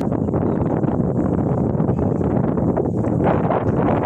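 Wind buffeting the microphone: a steady, rough rumble.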